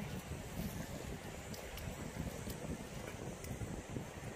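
Wind buffeting the microphone: a steady, low rushing noise.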